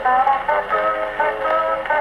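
A 1920s Pathé vertical-cut record of Hawaiian steel-guitar music playing on an Edison disc phonograph, with sliding notes over a plucked guitar accompaniment. The sound is thin, with no high treble.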